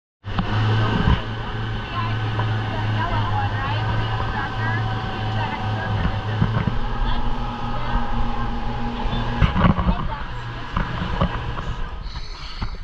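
Honda 150 four-stroke outboard motor running at speed, a steady low drone, with the rush of the boat's wake and wind on the microphone.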